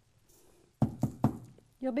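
Three quick knocks about a quarter second apart as the wooden-framed stretched canvas is tapped against the tabletop, knocking loose glitter off.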